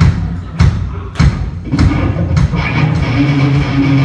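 Live band playing loud: heavy drum and low guitar hits land about every 0.6 seconds, and held guitar chords come back in about halfway through.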